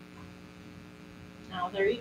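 Steady low electrical hum under quiet room tone; a woman starts speaking near the end.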